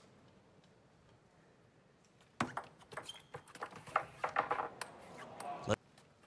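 Table tennis rally: the ball clicking sharply off the bats and the table in quick succession, starting about two seconds in after a quiet lead-in.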